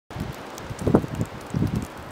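Wind buffeting the camera microphone: a steady hiss with low rumbling gusts, the strongest about a second in and another near the end.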